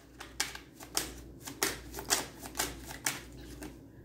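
A deck of tarot cards being shuffled in the hands, a quick, irregular run of soft card clicks, a few a second.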